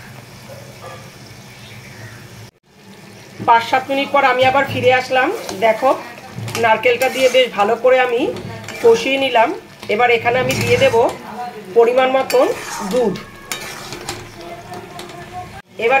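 A flat metal spatula stirring and scraping prawns in a thick coconut-cashew paste around a kadai, over sizzling. The scraping gives wavering pitched squeals, dense from about three seconds in and easing off near the end.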